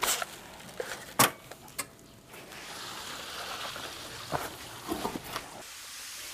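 A few sharp clicks and knocks as the greenhouse water line is opened at the pump, the loudest about a second in. Then, from about two and a half seconds, a steady hiss of water rushing through the irrigation hoses to water the melon seedlings.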